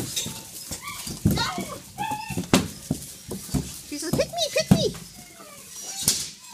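Long-coated German Shepherd puppies scrambling in a shavings-bedded pen with a woman's voice among them. There are scattered scuffs and knocks throughout, and a run of short high whines about four seconds in.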